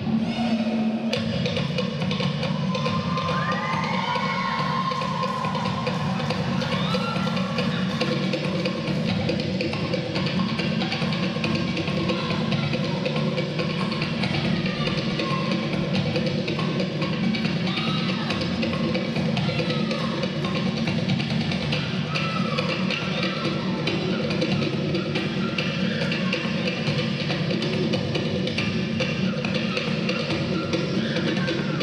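Fast Polynesian drum music for dance: rapid, steady strikes on wooden slit drums and drums, continuous throughout, with a few short arching high sounds over the beat now and then.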